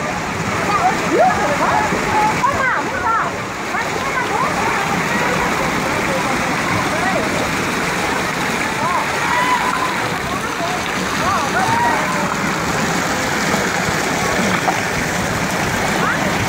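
Steady rush of water running down water slides and splashing over a water-play structure, with children's shouts and chatter scattered over it.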